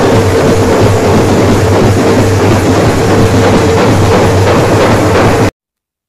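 Street drum band playing loudly, big slung drums beating in a dense, crowded rhythm. The sound cuts off suddenly about five and a half seconds in.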